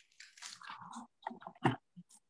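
Irregular rustling and clicking handling noise, with a sharper knock about three-quarters of the way through, picked up by a video-call microphone that keeps cutting in and out.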